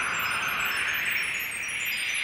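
Shimmering chime-like sound effect: a swell of airy noise that sweeps up and down in pitch, sprinkled with thin, high tinkling tones.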